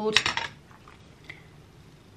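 Hair tools being handled: a quick run of hard clicks and taps in the first half second, then a quiet room with one faint tick about a second later.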